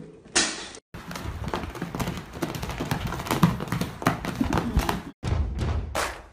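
Many quick, irregular taps and knocks, like small objects or paws striking hard surfaces, broken by a brief cut to silence near the start and another near the end.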